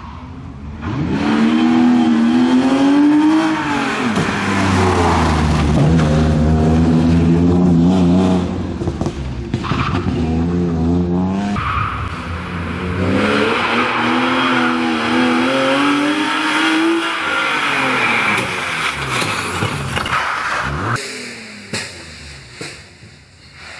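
BMW E36 320i rally car's straight-six engine driven hard past the microphone. The pitch climbs under acceleration and drops at gear changes and braking, with some tyre noise. It is heard twice, a second pass following a cut about halfway through, and dies away near the end.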